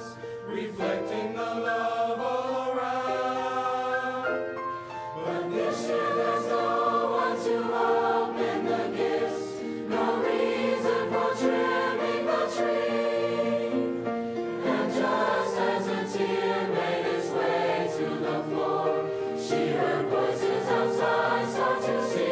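A choir singing a Christmas song in several-part harmony, holding long sustained notes. The sound grows fuller about five seconds in.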